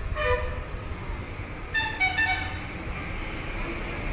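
Street traffic noise with a vehicle horn: one short toot near the start, then a quick run of about three toots about two seconds in.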